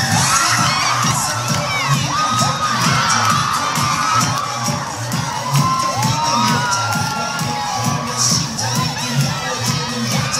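A crowd of young women screaming and cheering continuously, with music's steady beat underneath at about two beats a second.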